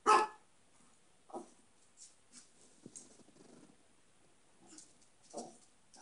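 A dog barking: one loud bark at the very start, then two quieter barks, about a second and a half in and near the end.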